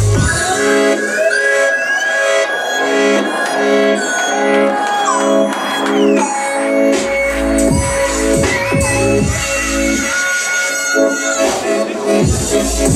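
Electronic hip-hop beat from a producer's set, with sustained synth chords and synth lines that slide in pitch. The deep bass drops out for the first several seconds, comes back about seven seconds in, and cuts out briefly again near the end.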